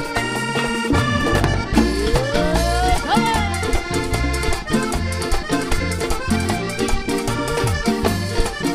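Live vallenato band: a diatonic button accordion playing the melody over a band with a bass line and a steady beat. A voice rises in a long cry about two seconds in, then rises and falls again just after.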